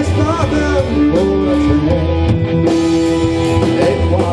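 Live rock band playing, with electric guitar, violin, bass guitar and drum kit, at a steady, even loudness.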